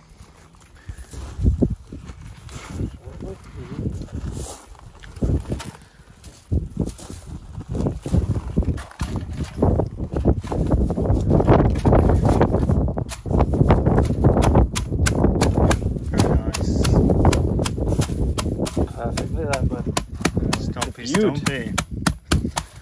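Wire mesh rattling and clinking while it is folded into a basket, with knocks of a wooden stick stomping the folded mesh down onto gravel. The knocks are sparse at first, then turn into dense crunching and clicking from about halfway through.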